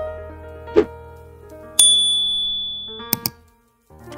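Soft piano background music fading out, then a single bright ding about two seconds in with a ringing high tone, and two quick clicks about a second later: a subscribe-button notification and mouse-click sound effect.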